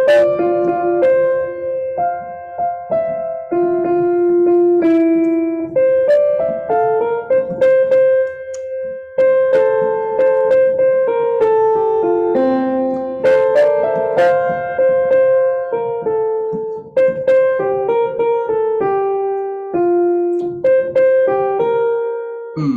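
Piano keyboard playing choral parts as rehearsal lines: single-note melodies, often two independent lines sounding together, moving at a steady pace.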